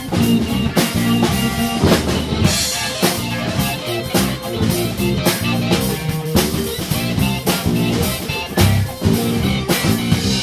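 Live band playing an instrumental break with no vocals: a drum kit keeping a steady beat under guitar and a Hammond XB-1 organ.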